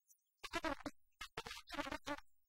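A person's voice in two short stretches, one about half a second in and a longer one from just after a second in, on an old film soundtrack.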